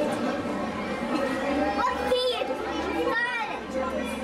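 Indistinct chatter of several people with children's voices, including two high-pitched child calls about two and three seconds in.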